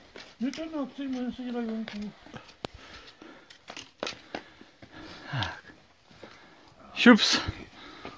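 A man's voice calls out briefly about half a second in. Scattered light clicks and knocks follow from ski poles, skis and bindings being handled. A short louder burst of voice comes near the end.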